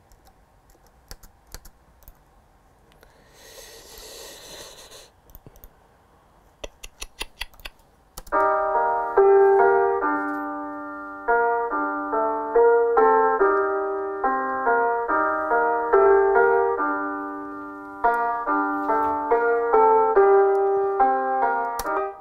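Laptop keyboard and trackpad clicks, with a quick run of them just before the music starts. About eight seconds in, a basic sampled-piano melody from the Addictive Keys plug-in begins playing back: single notes over held tones in a simple repeating pattern.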